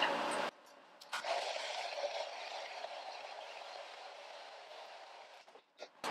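Hair dryer blowing, starting with a click about a second in, its noise slowly fading toward the end.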